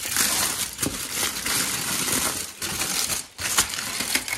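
Aluminium foil crinkling and crackling as hands unfold it. The crinkling is dense for the first two and a half seconds, then thins to a few sharp crackles.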